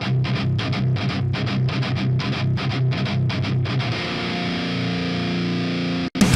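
Distorted electric guitar playing a fast run of palm-muted chugs on a low note, then a chord left to ring about two-thirds of the way through, before the sound cuts off abruptly at the end.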